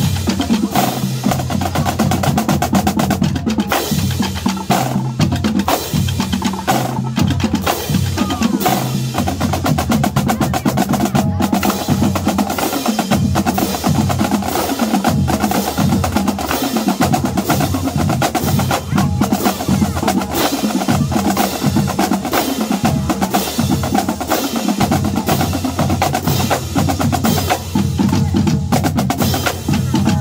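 Marching drumline playing a cadence: marching snare drums with fast stick patterns and rolls, crash cymbals, and bass drums sounding a changing pattern of low notes underneath.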